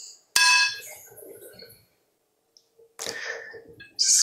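A metal fork clinks once against a ceramic plate, with a short ring that fades away. Near the end the fork scrapes on the plate as it cuts into a pancake.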